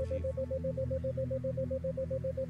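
Soft, steady background music of sustained low synthesizer tones, with a single tone near 528 Hz pulsing on and off about seven times a second: a 7 Hz isochronic tone meant to induce theta-wave relaxation.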